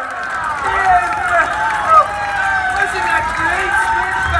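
Several voices overlapping, loud and continuous, with no clear words.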